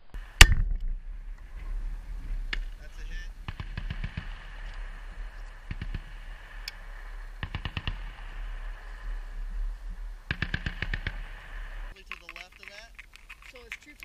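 A single sharp, loud shot about half a second in: an M320 40 mm grenade launcher firing. It is followed by three short bursts of distant machine-gun fire, near four, eight and eleven seconds.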